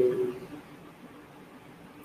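A man's voice trailing off in a drawn-out hesitation sound, then a pause with only faint room noise.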